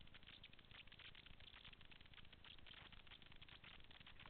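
Faint, continuous clatter of a mountain bike rolling fast over a rough dirt trail: many quick, irregular ticks and rattles.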